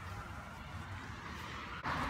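Faint low rumble of outdoor background noise on a handheld phone's microphone, with no distinct event; the sound changes abruptly near the end.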